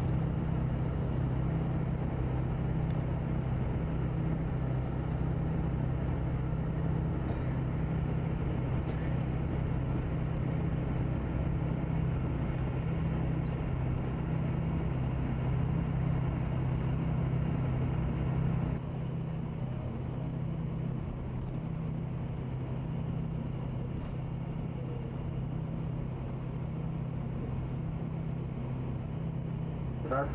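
Steady engine hum and road noise inside a moving tour coach's cabin. The sound drops to a lower, duller level about two-thirds of the way in.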